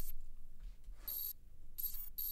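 Quiet glitch sound effects from a record label's logo intro: short bursts of high, hissy digital static that cut in and out, one about a second in and another near the end.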